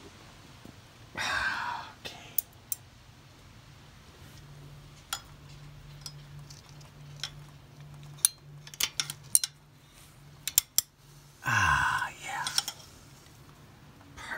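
Scattered light clicks and clinks of tools and parts being handled, several in quick succession in the later half, with a low voice heard briefly about a second in and again near the end.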